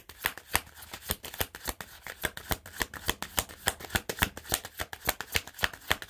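A deck of tarot cards being shuffled by hand: a steady run of crisp card clicks, about five a second.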